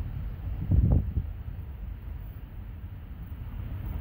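Minivan driving slowly, a steady low road and engine rumble heard from inside the cabin, with one brief louder thump just under a second in.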